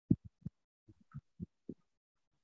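Keyboard typing heard as about eight soft, muffled thumps in an uneven rhythm.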